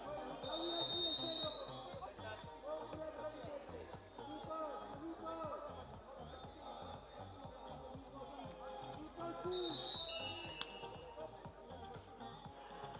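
Sports-hall ambience: indistinct voices and background music running together, with a brief shrill high tone about half a second in, another just before the end, and a sharp click right after it.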